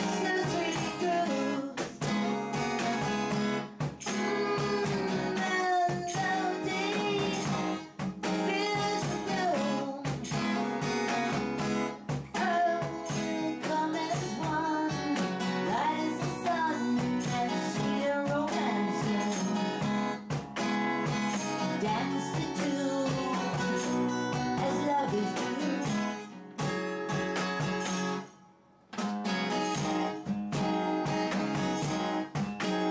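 A woman singing a slow song to her own strummed acoustic guitar, played live, with a brief break in the playing near the end.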